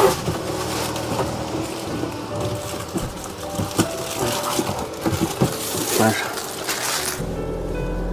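Thin plastic protective film crinkling and crackling as it is peeled off a motorhome window frame, over quiet background music. A steady low hum comes in near the end.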